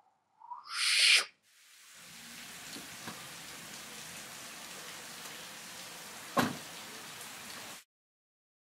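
Steady rain hiss that fades in about a second and a half in and cuts off suddenly near the end, with one sharp thump about six and a half seconds in. Just before the rain starts, a short loud rising whoosh.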